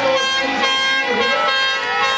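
Several spectators' handheld air horns blowing at once, a loud chorus of overlapping held tones, some sliding in pitch.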